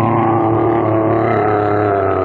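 Sound effect of a bear growling: one long, steady, low growl.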